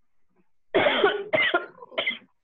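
A person coughing three times in quick succession, about a second in, heard over a video-call connection.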